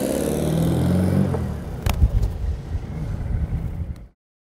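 Air-cooled flat-four engine of a 1966 Volkswagen Beetle with a 1800 cc engine, running as the car drives, a steady hum that drops away after about a second and a half. A sharp click comes about two seconds in, then an uneven rumble until the sound cuts off abruptly.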